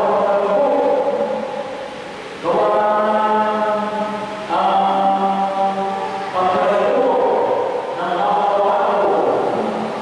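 A man chanting a liturgical prayer into a microphone on held notes, in phrases of about two seconds each.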